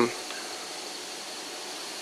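Pause between words: steady outdoor background hiss with a faint, unwavering high tone above it.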